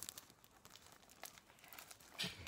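Faint crinkling of thin plastic cellophane wrap being picked at and peeled off a Blu-ray case, with a few light ticks.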